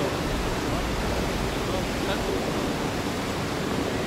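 Steady roar of the Salto San Martín waterfall at Iguazú Falls, heard from the viewpoint right above the drop: a continuous, even rush of falling water.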